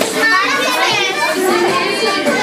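Many women's and children's voices talking over one another in loud, continuous chatter.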